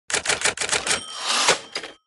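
Typewriter sound effect: a quick run of about seven key strikes, then a rising rush of noise ending in a sharp strike, with a faint ringing tone through the second half.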